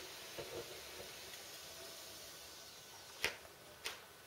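A large steel cooking pot being lifted off a camping stove, over a faint steady hiss. Two sharp metallic knocks about half a second apart near the end as the pot is handled and set down.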